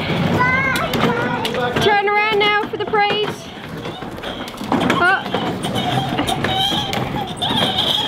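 Young children's high-pitched voices calling out, some notes drawn out long, over the low rumble of plastic ride-on toy car wheels rolling across paving slabs.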